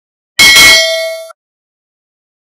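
Bell ding sound effect for a notification-bell click: one sharp metallic strike that rings for about a second, then cuts off.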